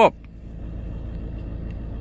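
Camper van engine running, heard as a steady low rumble inside the cab.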